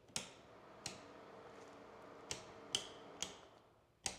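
Faint footsteps on a wood floor: about six short, sharp clicks at uneven spacing over a faint steady hum.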